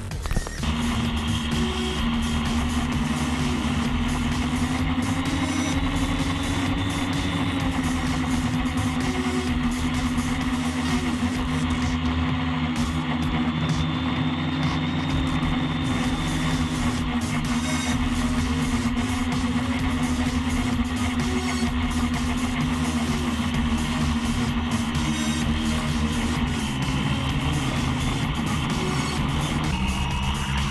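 Quadcopter electric motors humming at a steady pitch in flight, dropping lower near the end, mixed with background music.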